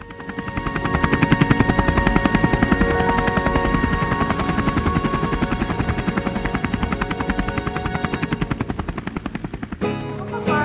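Helicopter main rotor chopping with a fast, even beat, with a few steady high tones over it. It swells up in the first second and fades out near the end.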